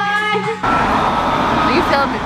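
A woman singing karaoke over backing music, cut off suddenly about half a second in by steady street traffic noise.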